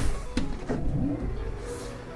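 Automatic sliding glass door opening as its push button is pressed: a sharp click, a second click, then the low rumble of the door motor running the door open.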